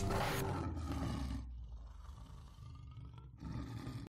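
A lion's roar sound effect for a logo reveal, opening with a sharp whoosh-like burst, then a low rumble that fades away before cutting off suddenly at the end.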